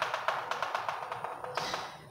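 Chalk chattering against a blackboard as a line is drawn: a fast, even run of ticks, about ten a second.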